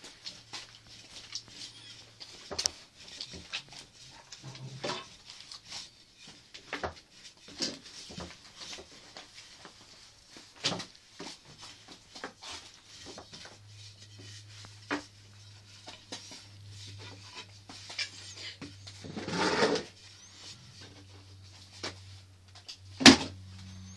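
Scattered light knocks, taps and rubbing sounds of handling and movement on wood, with a faint steady low hum in the second half and a short louder sound a little before the end.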